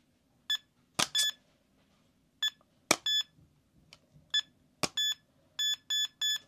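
A cheap electronic RFID lock beeping again and again as an RFID card is tapped against it. The beeps are short and high, about a dozen of them, coming faster near the end, with a few sharp clicks in between.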